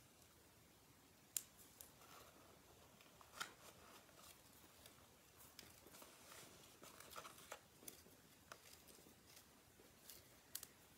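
Faint, scattered clicks and rustles of paper leaf cutouts being handled and pressed onto glue dots, with one sharper click about one and a half seconds in.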